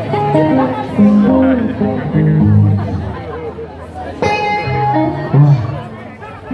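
Live band instruments playing loose, unstructured notes, a guitar among them: a low line of short stepping notes and a bright held note about four seconds in, with people talking over it.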